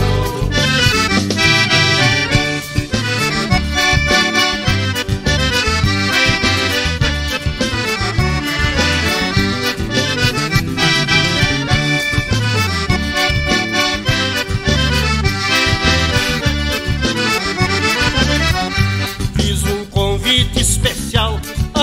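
Instrumental break of a gaúcho vanerão: button or piano accordion playing the lead melody over a steady rhythm of bass, guitar, drums and pandeiro.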